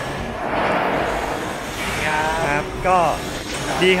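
A young man talking in Thai, after about a second and a half of indistinct noise at the start.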